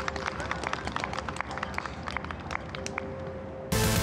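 Gallery applause for a holed putt: many quick, irregular hand claps that thin out over a few seconds. Loud electronic music cuts in suddenly near the end.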